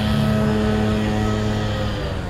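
A motor vehicle engine running at a steady low hum, dropping slightly in pitch near the end.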